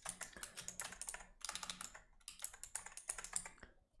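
Typing on a computer keyboard: quick runs of light keystrokes, with a brief pause about halfway, as a name is typed into a text field.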